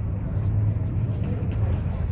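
A steady low rumble with faint voices of people in the background.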